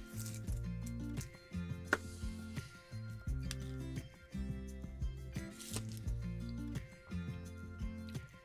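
Background music with a repeating bass line; no speech.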